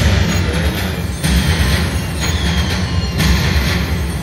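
Money Link: The Great Immortals slot machine playing its bonus-feature music and sound effects, loud and busy, with a fresh surge about a second in and another about three seconds in.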